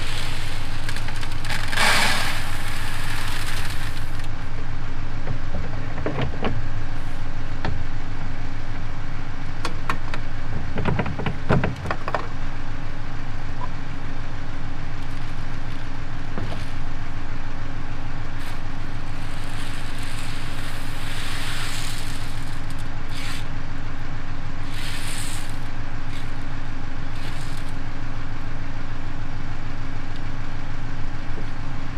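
An engine idles steadily throughout. Over it come short bursts of corn seed rattling and pouring out of a planter's plastic seed hoppers, with plastic scraping and knocks as the hoppers are handled, loudest near the start and around eleven seconds in.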